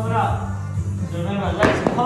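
Background pop music with a singing voice. About one and a half seconds in, a sharp thump and then a lighter knock as a foam ab mat is set down on the gym floor.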